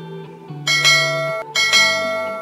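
Notification-bell sound effect from a subscribe-button animation: a bright bell rings twice, about a second apart, each ring fading away, over background music.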